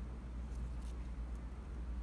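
Quiet room tone: a low steady hum with a few faint, light ticks.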